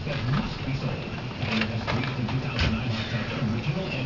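Indistinct voice talking in the background, with a few light knocks about midway.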